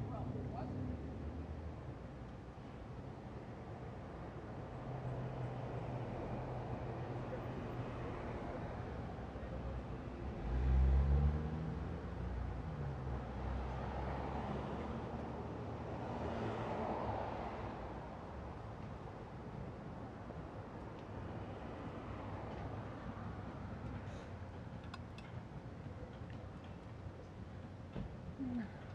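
Street traffic: car engines running and cars passing. About ten seconds in, one engine swells loudly with its pitch rising and then falling, and a few seconds later a broad rush of passing-car noise rises and fades.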